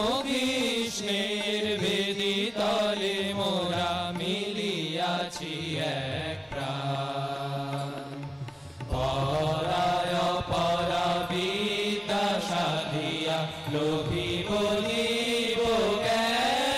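A group of young men singing a devotional song together in unison, long held notes sliding up and down in pitch, over a steady harmonium drone.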